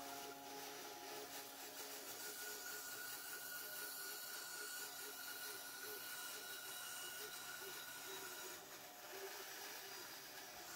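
Band saw running and cutting through a pine board, a faint steady whine with a hiss.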